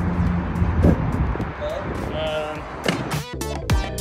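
An electric unicycle and its rider going down on a cobbled slope: outdoor noise with knocks and a brief voice. Music with a drum beat comes in about three seconds in.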